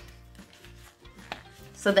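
Soft background music with faint handling of paper cards and a plastic sleeve, and one sharper click a little past the middle. A woman starts to speak at the very end.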